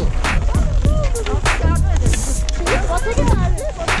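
Background music with a steady beat and a singing voice.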